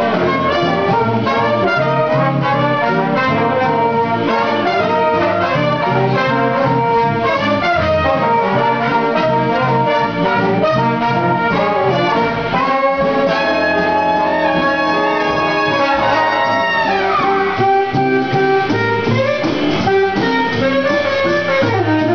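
A ten-piece jazz big band playing live, the brass section leading in full ensemble. About two-thirds of the way through the horns hold a long chord that ends in a steep downward slide, and a second slide comes a few seconds later.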